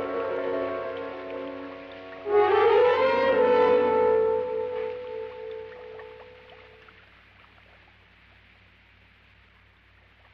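Dramatic orchestral film music. Held chords give way, a little over two seconds in, to a sudden loud swell with rising notes, whose held note fades away over the next few seconds.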